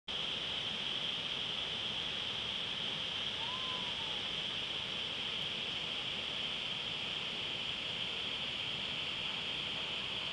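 Steady rush of water pouring over a small stone dam waterfall, an even hiss with no breaks. A faint short whistled note rises and falls about three and a half seconds in.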